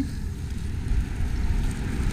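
Low, steady rumbling background noise with no distinct event in it.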